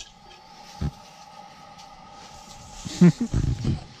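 A faint steady hum with a single short knock about a second in, then a brief untranscribed burst of a person's voice, such as a laugh or exclamation, near the end, which is the loudest sound.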